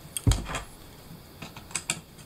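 A knock and a few sharp clicks as a homemade wooden whirligig hub and its metal bolt are handled and put back together.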